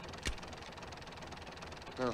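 A faint, steady engine running under a hiss, with a single click about a quarter of a second in.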